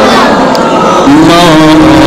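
A man's voice chanting in a sung melody through a microphone and PA, loud. About a second in, it settles into a long held note with a wavering ornamented line above.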